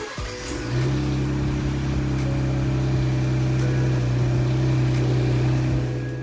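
Ford Bronco's 2.7-litre EcoBoost V6 cranking and catching, then settling within a second into a steady idle.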